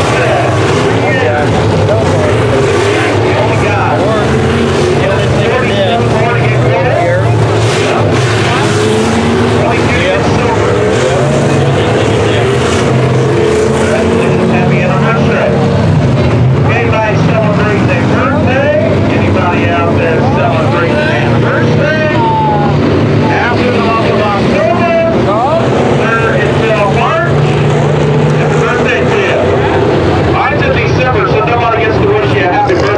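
A pack of dirt-track sport modified race cars' V8 engines running hard around the oval, their pitch rising and falling as they throttle off and on through the turns. Crowd chatter close by is mixed in.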